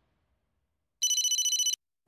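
A telephone ringing once, briefly, starting about halfway in: a high-pitched ring that pulses rapidly and stops after under a second.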